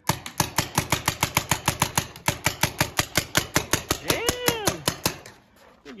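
Paintball marker firing rapidly, a steady string of sharp pops at about eight shots a second that stops just before the end.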